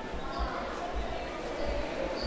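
Dull low thuds about twice a second: the footsteps of a person walking with the camera.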